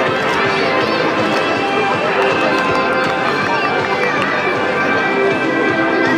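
Many children shouting and cheering over steady background music.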